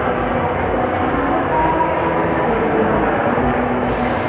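Steady, loud hubbub of a busy indoor shopping mall: indistinct voices and general noise blurred together by the echo of the hall.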